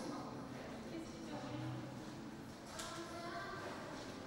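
Indistinct talk of people in a large hall, too faint and distant to make out words.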